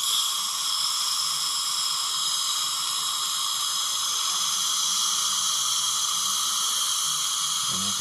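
Dental suction tube drawing air at the mouth: a steady, even hiss, with a faint low hum beneath it.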